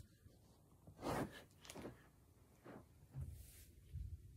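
Faint sounds of a person moving about on a carpeted floor: a few short rustles and soft thumps, about one a second, the last a little longer with a low thud.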